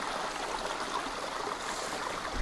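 Shallow, rocky creek running: a steady rush of water.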